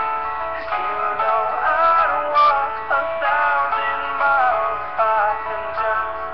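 A song playing: a sung vocal melody over backing music, running continuously.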